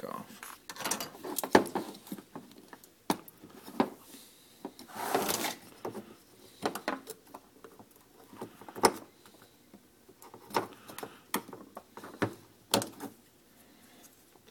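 Plastic clicks and taps of a pick working the catches of a GM PCM harness connector's clear plastic cover, in irregular single clicks, with a longer scrape about five seconds in.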